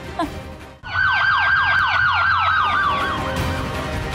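Police siren wailing: a fast warble of about four falling sweeps a second over a held tone, starting about a second in and fading out about three seconds in.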